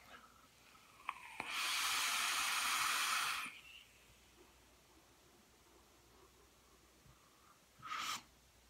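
A long draw on an e-cigarette dripping atomizer fired by a Reuleaux DNA 200 mod set at 100 watts with Clapton coils. A click or two sounds about a second in, then steady hissing lasts about two seconds as air is pulled through the firing coils.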